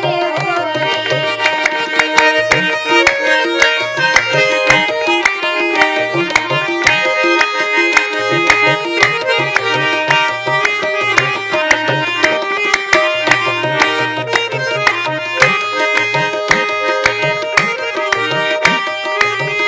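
Harmonium playing a melody in held, stepwise notes over a tabla keeping up a quick, dense rhythm, with deep bass-drum strokes underneath. This is the instrumental accompaniment of a Holi folk song.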